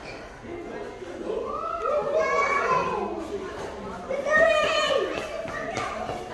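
Young children's high-pitched voices calling out and babbling, in two stretches, the louder one a little past the middle.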